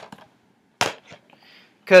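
Two sharp clicks, a little under a second apart, from a hard object being handled at a desk, with speech starting near the end.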